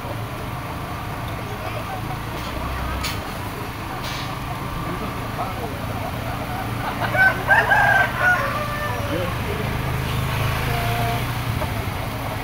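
Ayam kampung (Indonesian village chicken) roosters crowing among caged fowl. The loudest crow comes about seven seconds in and lasts around a second and a half.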